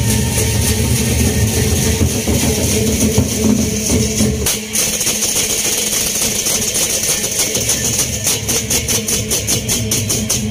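A Lombok gendang beleq ensemble playing: large barrel drums and hand cymbals together. The heavy low drumming thins out about halfway, leaving the cymbals clashing in a steady rhythm of about four strokes a second.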